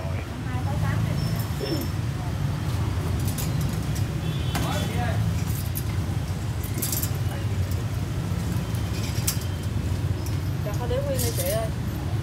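Busy street-market background: a steady low rumble of traffic and engines, faint voices, and scattered sharp clicks and clatters from handling at a meat stall's counter.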